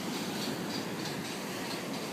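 Steady rush of surf breaking on the rocky shore and seawall, with a faint high pulsing repeating about three times a second.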